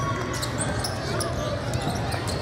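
Basketballs bouncing on a gym court in a large hall, with a few short sharp impacts over steady voices.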